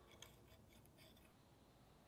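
Near silence broken by a few faint, small clicks and ticks in the first second and a half. These come from a wooden stirring stick working epoxy into a wooden handle and against a small plastic mixing cup.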